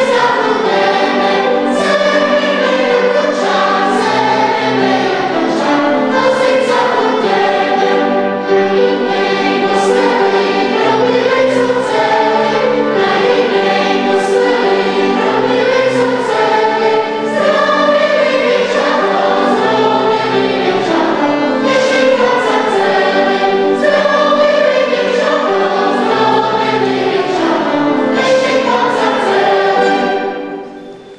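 A mixed choir of children and adult women singing a Moravian folk song together, accompanied by violin and piano.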